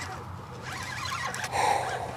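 A man's brief gasp about one and a half seconds in, over a faint steady low hum.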